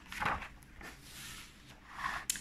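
A page of a paper picture book being turned by hand: a brief rustle about a quarter second in, then a fainter rustle around the middle.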